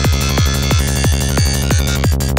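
Hi-tech psytrance playing at full volume. A fast, even kick drum hits about three times a second, each kick sliding down in pitch, over a steady bass and layered synth tones.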